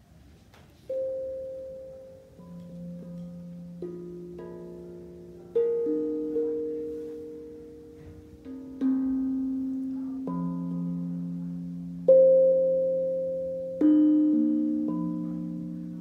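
Steel tongue drum struck with mallets, one note at a time: about a dozen notes starting about a second in, each ringing on and slowly fading under the next, making a slow wandering melody.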